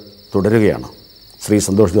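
A man speaking in two short phrases over a steady, high-pitched cricket trill that runs unbroken beneath the voice.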